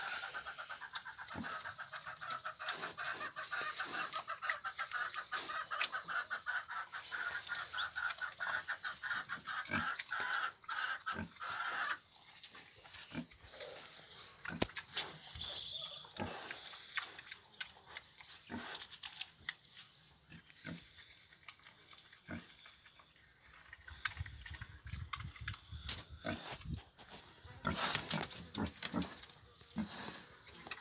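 Pig chewing and tearing at a pile of fresh grass, a run of irregular crunching clicks.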